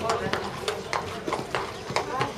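Hoofbeats of a grey show-jumping horse cantering on sand footing, short dull strikes coming in quick uneven groups, over a background murmur of voices.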